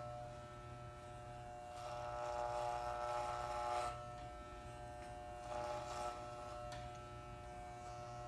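Electric hair clippers buzzing steadily as they trim a child's hair around the ear, louder for about two seconds partway through and briefly again near the end.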